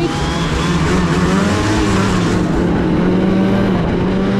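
Arctic Cat Catalyst snowmobile's 600 two-stroke engine running under throttle at mid revs, pulling along a snowy trail. Its pitch wavers up and down as the throttle moves.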